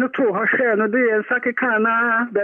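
A man's voice rapidly chanting the one syllable 'sana' over and over, in the manner of speaking in tongues in prayer. The sound is thin, as over a radio or phone line.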